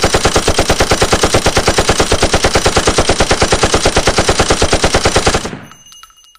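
A loud, rapid, even rattle of about ten strokes a second, like machine-gun fire, that fades out near the end.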